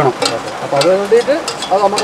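A woman talking, with a few faint clicks beneath her voice.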